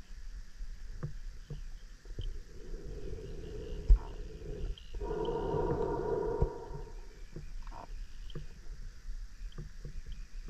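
Underwater hum of a diver propulsion vehicle's motor, coming and going in spells of a second or two and strongest about five to seven seconds in. Scattered faint knocks, with one sharp knock just before four seconds.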